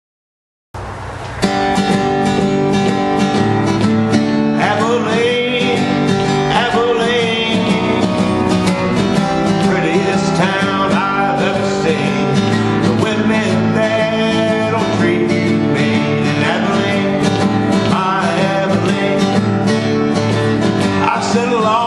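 Acoustic guitar strumming the intro of a country song, starting just under a second in and getting louder and fuller about half a second later.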